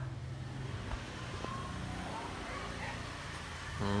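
Steady low background rumble, like distant traffic, with a couple of faint ticks. A man's short 'à' comes at the very end.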